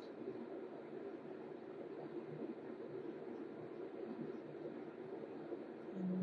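Quiet room tone: a steady low hum and hiss with no distinct events.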